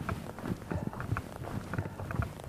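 Footsteps on a dry dirt woodland trail strewn with dead leaves and twigs: a string of short, uneven steps, several a second.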